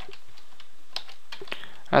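Computer keyboard keystrokes: a few scattered, irregular key clicks as a short word is typed, over a faint steady hiss.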